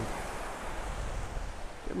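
Small surf waves washing onto the shore in a steady hiss, with wind rumbling on the microphone.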